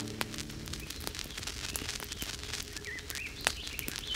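A few short bird chirps, about three quarters of the way through, over a faint scattering of crackles and clicks, with one sharper click about three and a half seconds in.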